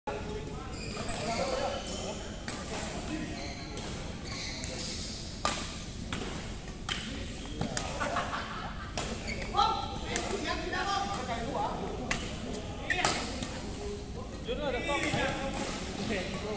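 Badminton rackets striking a shuttlecock: sharp, irregularly spaced cracks, about a dozen, in a large hall, with people talking between the strokes.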